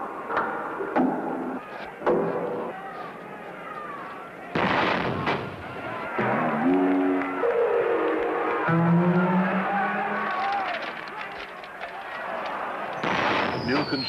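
A cannon firing with a loud bang about four and a half seconds in, amid comedy sound effects. Sliding, gliding tones follow the bang, and near the end a high whistle falls steadily in pitch.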